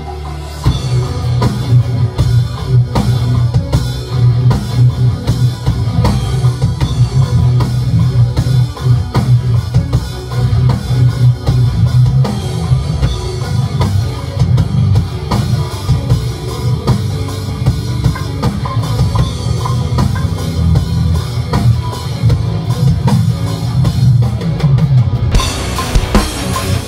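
Electric guitar and a Roland drum kit playing a metal song together in a rehearsal room, picked up by the camera's own microphone, with dense drum hits over a heavy low end. Just before the end the sound suddenly turns brighter.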